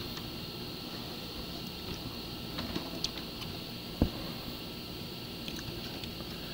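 Plastic Lego pieces handled on a cloth-covered table: a few light clicks and one sharper knock about four seconds in, over a faint steady hiss.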